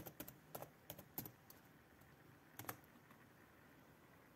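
Faint typing on a computer keyboard: a quick run of keystrokes in the first second and a half, then two more keystrokes close together near the end.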